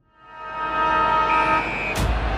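An edited-in logo sting: a horn-like chord of several held tones swells up from silence, a brighter high tone joins about halfway, and it ends in a sharp hit with a low boom.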